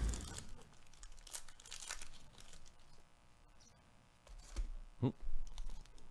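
Foil wrapper of a trading card pack being torn open and crinkled by hand in scattered rustles, quieter in the middle, with a few more short handling sounds near the end.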